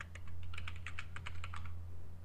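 Computer keyboard typing: a quick run of about a dozen keystrokes as a word is typed, stopping shortly before the end, over a steady low hum.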